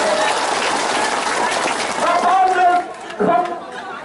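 A seated crowd applauding for about two seconds, then a man's voice over a microphone speaking again, with a short pause near the end.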